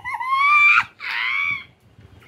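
A woman squealing with laughter: two long high-pitched shrieks, the first rising in pitch, the second shorter.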